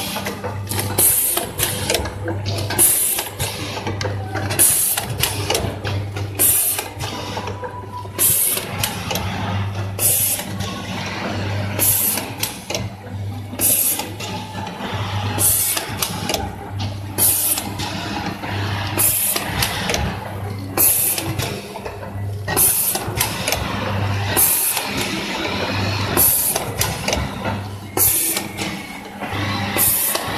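Small vertical sachet packing machine running at about 33 bags a minute, one working stroke roughly every two seconds. Each stroke of its air-cylinder sealing and cutting jaws brings a short hiss, over a low buzz that comes and goes in step with the cycle.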